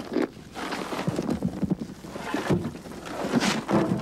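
Shovelfuls of dirt and clods dropping into a grave and landing on a small casket lid, in several irregular bursts; the loudest come about two and a half and three and a half seconds in.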